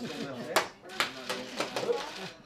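Several voices chattering in a small room, with four sharp taps or knocks in the second half.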